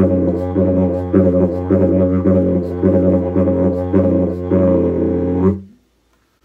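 Yidaki (didgeridoo) in F# playing a steady low drone, its overtones pulsing in a rhythm about twice a second. The playing stops abruptly about five and a half seconds in.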